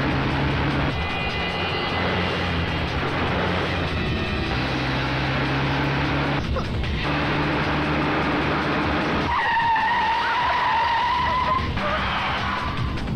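Movie car-chase soundtrack: vehicle engines running hard with tyre skidding, under a music score. A long high squeal begins about two-thirds of the way in and holds nearly to the end.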